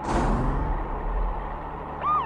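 Cartoon sound effect: a sudden whoosh that fades out within about a second, over a low vehicle rumble that dies away near the end.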